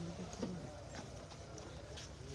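A pause in speech: low room tone with a faint steady hum and a few faint, short clicks.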